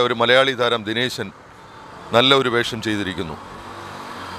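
A man talking into a handheld microphone in two short bursts, with a steady bed of road traffic noise behind him that swells a little near the end.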